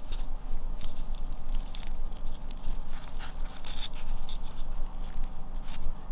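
Soil substrate and dry leaf litter tipped and pushed by hand out of a clear plastic cup into a plastic enclosure: scattered soft patters and crackles of falling substrate and leaves, over a steady low hum.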